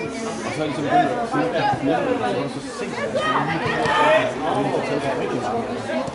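Several people talking over one another, the words indistinct, with louder voices about a second in and around four seconds in.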